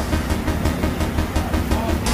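Busy market ambience: a steady low rumble with faint, indistinct voices from the crowd.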